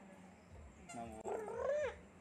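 A high-pitched, sing-song voice calls out the name "Allu" about a second in, the pitch rising toward the end of the call.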